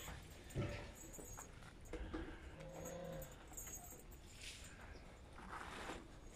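Faint sounds of two brown bear cubs moving about and playing in their enclosure: scattered soft scuffs, with a brief low tone about halfway through.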